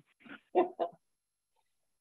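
Three short, pitched vocal sounds within the first second, the last two the loudest, then dead silence.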